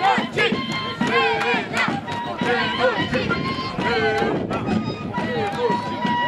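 A group of dancers calling and chanting together, their voices rising and falling in pitch, over crowd noise, with scattered sharp knocks.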